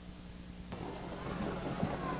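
Faint hiss and steady electrical hum on an old race-call recording; about two-thirds of a second in, a faint noisy background comes up suddenly and grows a little louder.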